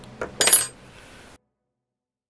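A small click, then a brief light metallic clink, like a metal object knocking against a hard surface; the sound then cuts off to dead silence.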